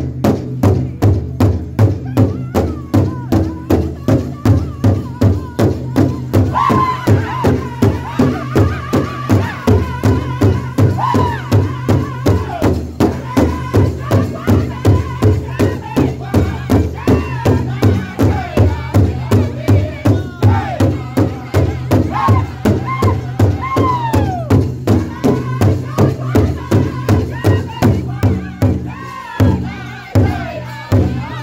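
Powwow drum group playing a large shared hide drum in a steady unison beat and singing. High-pitched lead singing comes in about six seconds in, the voices sliding down through each phrase, and the beat breaks off briefly near the end.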